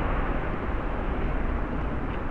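Steady outdoor street noise, a low rumble with an even hiss and no distinct events, picked up by the built-in microphone of spy-camera glasses.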